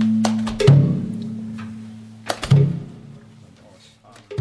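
Slow beats on a Mizo khuang, a wooden barrel drum, struck twice, each beat led by a lighter tap. Under the first beat a held chanted note of the song fades out, and the whole dies away toward the end.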